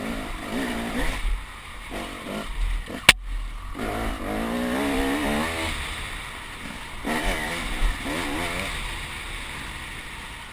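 KTM 300 enduro motorcycle engine heard from the rider's helmet, its pitch rising and falling with the throttle on a dirt trail. A single sharp knock sounds about three seconds in.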